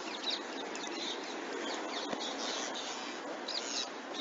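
Birds chirping, with short high calls scattered through, over a steady hiss of outdoor background noise.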